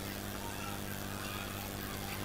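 Quiet pause in a hall: a steady low hum with faint, indistinct voices.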